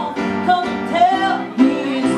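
A woman singing a pop ballad, accompanying herself on a Schimmel piano.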